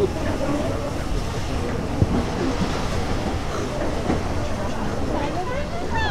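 Austerity 0-6-0 saddle tank steam locomotive running light on the next track and pulling away, with a steady hiss of steam and a single sharp knock about two seconds in.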